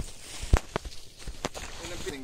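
Footsteps of someone walking through vegetation: a few irregular steps, the loudest about half a second in.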